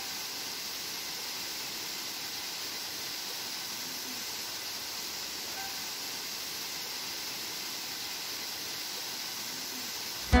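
Waterfall pouring over rock ledges into a pool: a steady, even rush of falling water.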